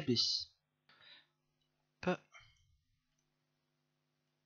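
A short click about two seconds in, with a fainter tick about a second in, from a computer mouse button, over faint room tone with a low steady hum.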